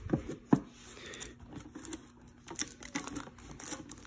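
Plastic shrink-wrap crinkling and rustling with scattered small clicks as hands work at the wrapping on a metal collector's tin; two sharp clicks in the first half second, the second the loudest.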